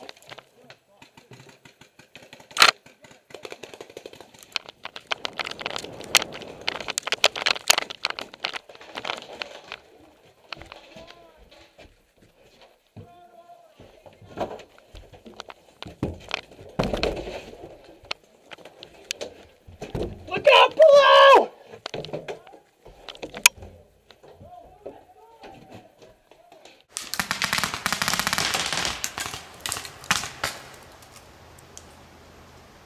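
Paintball markers firing, sharp pops in quick clusters, with a loud shout about two-thirds of the way through and a louder stretch of rushing noise near the end.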